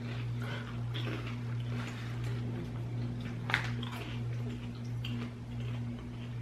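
Soft crunching and crackling of kettle corn being chewed, with scattered small clicks and one sharper click about three and a half seconds in, over a steady low hum.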